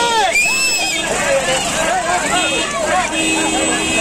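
Excited crowd of many people talking and shouting over one another at once, with a few high calls near the start.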